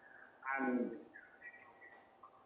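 A caller's voice over a phone line that is breaking up: one short garbled, falling syllable about half a second in, then faint chirping, warbling fragments. These are the signs of a poor network connection on the call.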